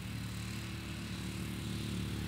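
A steady low engine hum, slowly getting louder.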